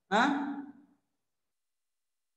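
A man's short questioning "huh?" with rising pitch, lasting under a second, followed by silence.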